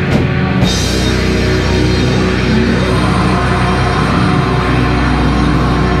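Live heavy metal band playing loud and dense: distorted guitars over a drum kit. About half a second in, the drums break into a fast run of rapid low kick-drum hits that carries on.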